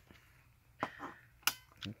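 A few light clicks and knocks from a laptop's slim optical drive as it is handled and moved aside after removal. The first comes about a second in, and two sharper ones come near the end.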